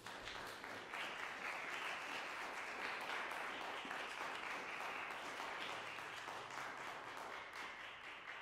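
Audience applauding steadily, beginning to die away near the end.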